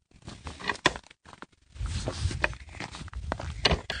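Footsteps: a run of irregular short steps, broken by a brief silence about a second in.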